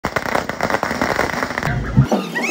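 A string of firecrackers going off in a fast, continuous run of sharp bangs that stops about a second and a half in.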